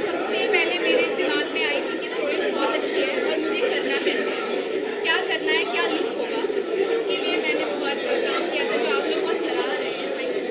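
A woman talking into press microphones over steady crowd chatter.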